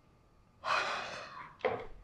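A woman breaking into tears: a long gasping, breathy sob starting about half a second in, then a second, shorter sob.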